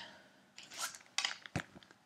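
Plastic sleeves and paper being handled: short rustles and crinkles, with a soft knock about one and a half seconds in.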